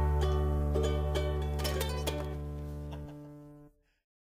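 Closing instrumental bars of a song: a run of short notes over a held low bass note, fading and stopping shortly before the end.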